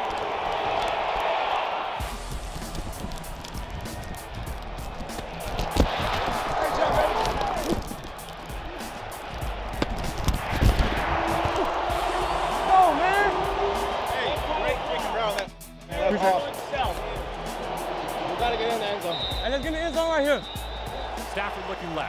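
Live game sound from a player's body microphone mixed under a music track: indistinct shouting voices and scattered thuds of footsteps and pad contact over a steady music bed.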